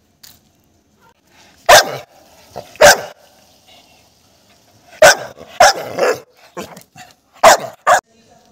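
A pit bull barking loudly close by: two sharp barks about a second apart, then a quicker run of barks from about five seconds in.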